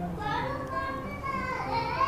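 A child's voice in the background, high-pitched and wavering, over faint music.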